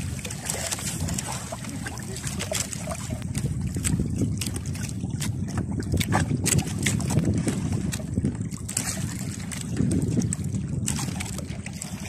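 Wind on the microphone and sea water lapping at a small outrigger canoe, with splashing and dripping as a wet fishing handline is hauled in hand over hand.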